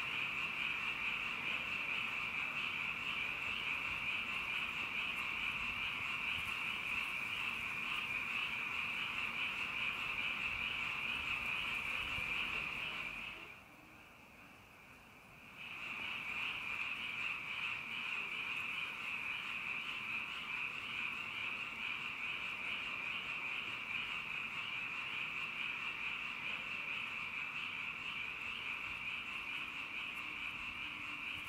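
A dense, steady, high-pitched chorus of many small calling animals, as heard in woods at night. It cuts out for about two seconds midway, then resumes.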